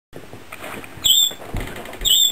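A pet budgerigar chirps once, a short high call about a second in, with a few soft low thuds later on.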